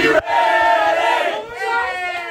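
A group of men shouting and chanting together in a huddle, many voices at once, with a brief break just after the start and a dip about a second and a half in.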